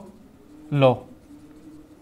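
A marker writing on a whiteboard, faint under one short spoken word a little before the middle.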